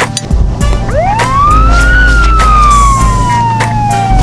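A siren: one wail that climbs steeply for about a second, then slides slowly back down, over background music with a steady beat.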